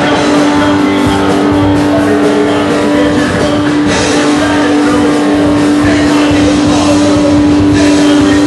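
Punk rock band playing live and loud: electric guitar, bass guitar and drum kit, with one note held steady above the rest.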